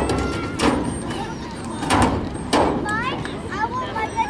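Voices shouting across a soccer field during play, with a rising call about three seconds in, and four short sharp thumps, the loudest at about two seconds.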